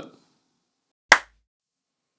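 A single sharp hand clap about a second in.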